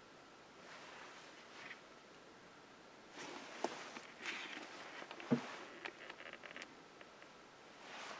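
Faint rustling and scattered sharp clicks in a quiet car cabin, the loudest click about five seconds in.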